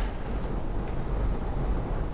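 Low, steady rumble of background noise on the talk microphone, with no distinct knocks or clicks.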